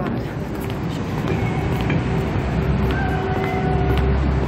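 Traffic noise: a steady low rumble and hiss, with a few held tones coming in about a second in.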